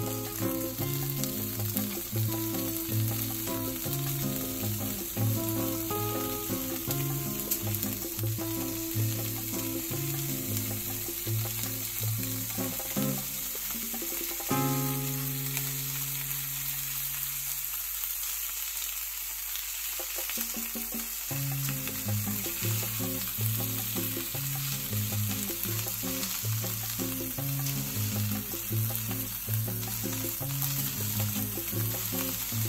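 Marinated beef kalbi sizzling on a foil sheet in a frying pan, a steady frying hiss. Background music with a repeating bass pattern runs underneath, pausing for several seconds about halfway.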